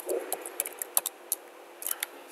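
Computer keyboard keystrokes: a run of short, irregular key clicks, about eight in two seconds, with a quick pair near the end.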